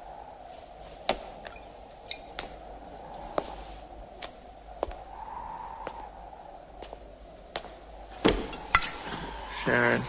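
Quiet, steady film-soundtrack ambience with scattered sharp clicks or taps about once a second, louder ones late on; a voice begins just before the end.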